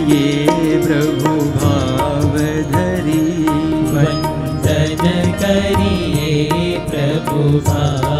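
Male voices singing a Gujarati devotional kirtan together, with harmonium, tabla and sitar accompaniment and a steady drum beat.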